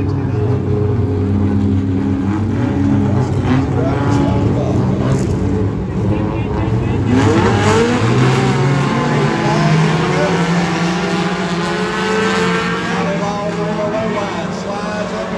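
A pack of dirt-track race cars running at racing speed during a heat race. Several engines sound at once, their pitch rising and falling as the cars accelerate through the turns and pass, loudest around the middle.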